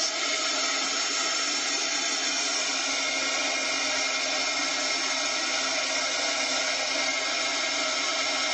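Heat embossing tool's fan motor running, blowing hot air to dry wet watercolour paint: a steady whir of rushing air with several steady motor tones in it.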